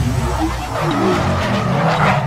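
Car sound effects of tyres skidding, laid over electronic music with a heavy bass, building to a swoosh near the end.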